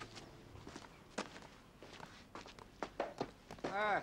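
Faint, scattered soft knocks at irregular intervals. Near the end a person's voice comes in with a rising-and-falling sound.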